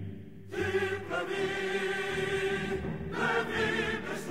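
Choral music: a choir singing long, held chords.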